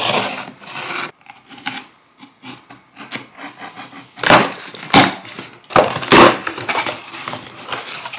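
Cardboard shipping box being opened: scratching and scraping at the packing tape, then several loud rips from about four seconds in as the tape tears and the flaps are pulled open.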